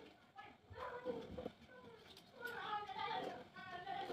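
Faint voices in the background, speech-like but with no clear words, heard about a second in and again through the second half.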